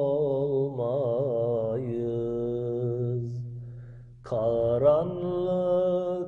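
A male voice singing an unaccompanied Turkish ilahi, holding a long ornamented note over a steady low vocal drone. The note fades out about four seconds in and the voice comes back in on a new phrase.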